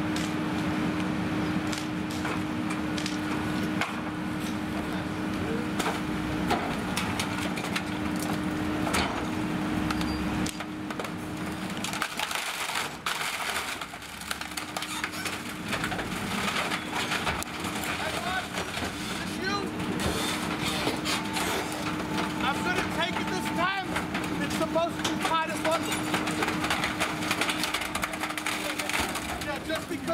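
Peterbilt 520 McNeilus rear-loader garbage truck running with a steady hum while wooden pallets in its hopper crack and splinter as they are crushed. The hum drops off briefly about twelve seconds in, then returns.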